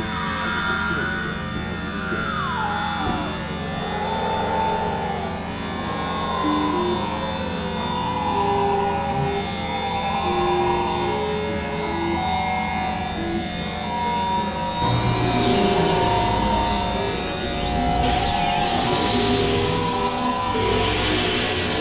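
Experimental drone music from synthesizers (a Novation Supernova II and a Korg microKorg XL). A steady low drone runs under falling pitch glides and short held notes. About three-quarters through it turns noisier, with wavering high sweeps.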